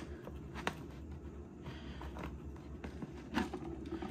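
Faint, scattered light taps and clicks of hand handling: a wooden paintbrush handle and a clear plastic tube knocking lightly against each other and the enclosure. A low steady hum lies under it.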